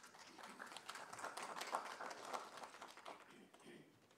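Faint, light applause from a small audience, dying away near the end.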